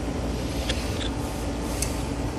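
Steady low hum with a faint steady tone and three faint, short clicks within about a second of each other.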